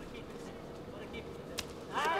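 Faint arena background with a single sharp slap near the end: a strike landing in a kickboxing bout.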